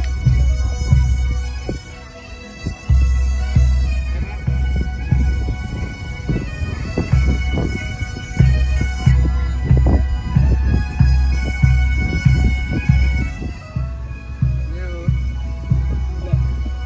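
Pipe band playing: bagpipes sounding a tune over their steady drone, with a bass drum beating time.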